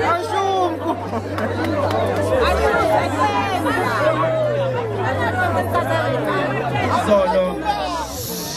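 Speech: a man talking into a handheld microphone over crowd chatter, with a low bass note underneath that shifts pitch every second or so.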